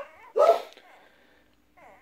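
A dog barking: one short bark about half a second in, just after the end of another at the very start.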